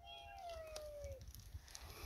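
One faint meow-like call, about a second long, starting right away and sliding gently down in pitch.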